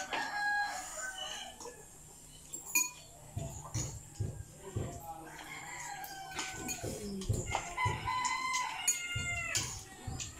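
A rooster crowing: a short call right at the start, then a longer crow over the last two seconds or so. Scattered light clicks of spoons and forks on bowls come in between.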